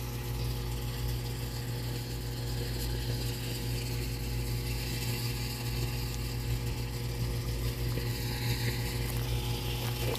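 A machine running steadily with a low, even hum whose pitch doesn't change.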